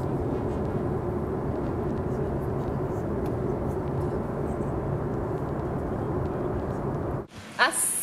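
Steady, even roar of an airliner cabin in flight, the jet engine and airflow noise sitting low. It cuts off abruptly about seven seconds in.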